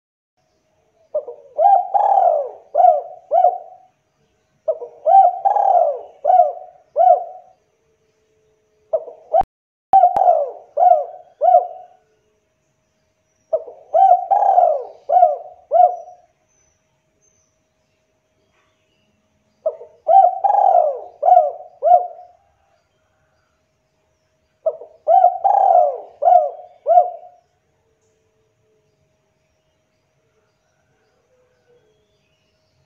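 Spotted dove (tekukur) cooing: six song phrases a few seconds apart, each a run of four or five rising-and-falling coos.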